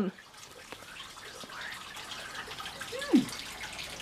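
A faint, steady rush like running water, with scattered small clicks, and one short vocal sound falling sharply in pitch about three seconds in.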